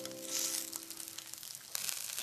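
Food sizzling and crackling as it fries in a pan, with the last sustained notes of background music fading out in the first second.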